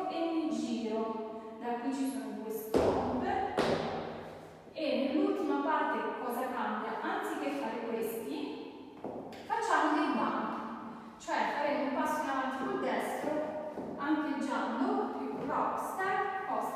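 A woman's voice talking through most of the stretch, over a few thuds of dance steps in boots on a hard floor, the loudest about three seconds in.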